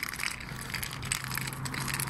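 Footsteps and the bare end of a walking cane, its end piece come off, clicking and scraping on the pavement in an irregular patter of short ticks.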